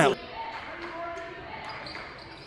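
A basketball bouncing on a hardwood gym floor during play, with the hall's live sound around it and a few faint held tones.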